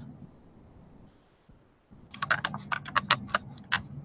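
A quick, uneven run of about a dozen computer keyboard keystrokes, starting about halfway in and lasting under two seconds.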